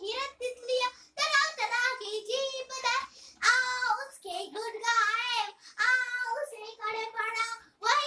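A young girl reciting a Hindi children's poem in a high, sing-song voice, phrase after phrase with short breaks for breath.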